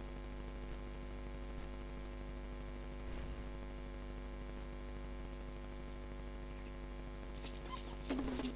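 Steady electrical mains hum with a stack of even overtones, carried on the sound system's feed.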